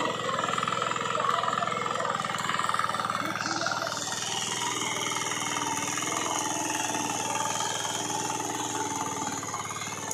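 Small single-cylinder engine of a walk-behind power weeder running steadily at idle, the tiller tines out of the soil and not under load.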